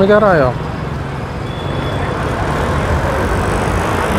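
Busy street traffic: auto-rickshaw and motorcycle engines running and passing, a steady mix of engine hum and road noise.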